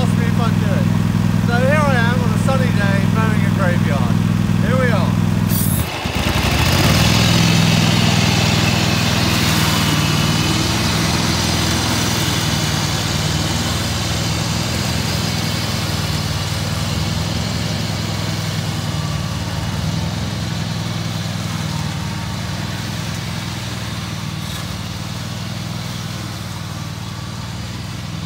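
Ride-on lawn mower's engine running steadily. About six seconds in the sound dips briefly, then comes back louder and rougher as the mower sets off through long grass, and it slowly fades as the mower drives away.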